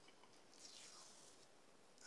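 Near silence: room tone, with a faint soft hiss around the middle.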